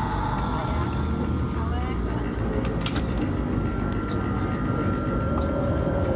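Steady low rumble of a moving train, heard from inside the carriage.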